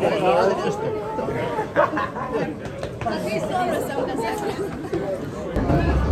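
Several people talking over one another in a group greeting. A low rumble comes in near the end.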